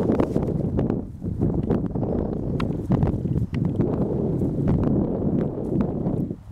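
Footsteps wading through tall dry grass and weeds: a continuous rustling and swishing of stalks, broken by short crunching snaps.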